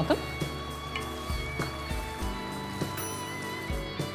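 Background music with sustained held tones, and a few soft knocks scattered through it.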